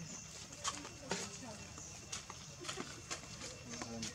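Scattered sharp clicks and taps, about six over the few seconds, over faint background voices.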